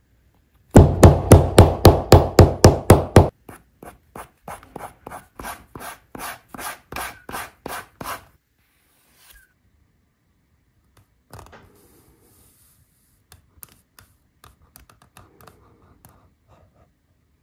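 Sanding block rubbed back and forth along the stitched edge of a leather wallet. About a dozen fast, loud strokes come first, then lighter, slower strokes that stop about 8 seconds in. Faint scattered handling sounds follow.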